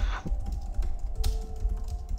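Computer keyboard keys clicking a few times over a quiet background music bed.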